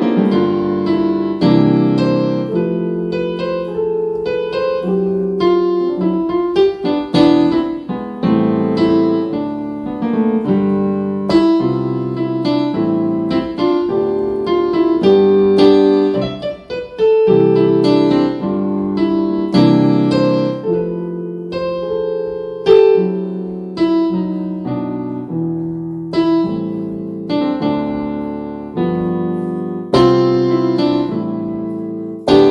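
Piano played with both hands: a gospel chord progression, full chords struck one after another and left ringing, with a brief pause about two thirds of the way through.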